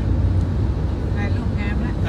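Steady low rumble of a moving vehicle, heard from inside the cabin. A voice speaks briefly in the second half.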